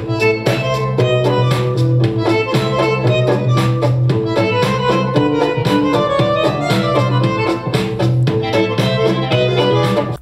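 Divoom Tivoo Max Bluetooth speaker playing instrumental music at its maximum volume, loud, with a heavy bass line and a steady beat. The music cuts off abruptly at the very end.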